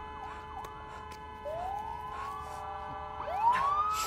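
Police siren in the film's soundtrack wailing, its pitch sweeping up twice, over a bed of steady held tones.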